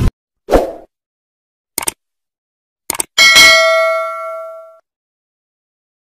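Subscribe-button animation sound effects: a short soft thump, two pairs of quick mouse clicks, then a single notification-bell ding that rings out for about a second and a half.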